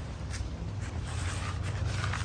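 Gloved hands pressing and rubbing potting soil around a seedling in a plastic nursery pot, making a few faint rustling scrapes over a low steady rumble.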